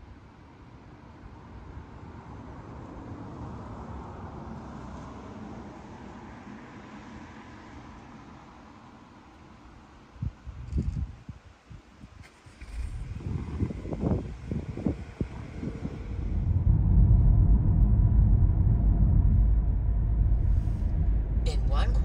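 Faint outdoor ambience with a few handling knocks, then a car's steady low road and engine rumble heard from inside the cabin, loud from about three-quarters of the way in.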